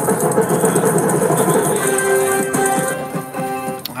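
Dancing Drums slot machine's win rollup: jingling coin-shower sounds over music while the credit meter counts up, giving way about halfway through to a run of steady musical tones.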